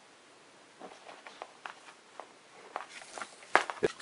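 Scattered light clicks and taps from hands handling wires and tools, getting louder and closer together near the end.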